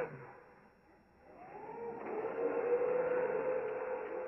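A dark ambient drone swells in after a voice cuts off: a hissing wash with a steady hum-like tone and a slow sweep that rises and falls, building over a couple of seconds and then holding.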